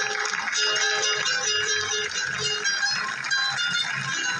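Guitar trio playing a bolero's instrumental introduction: a requinto picks out the lead melody in quick plucked notes over the rhythm of strummed acoustic guitars.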